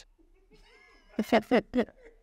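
A man laughing: a faint drawn-out vocal sound, then about four short, loud bursts of laughter falling in pitch near the end.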